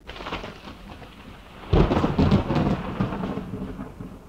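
Thunderstorm sound effect: steady rain hiss, then a loud thunderclap almost two seconds in that rumbles and slowly fades.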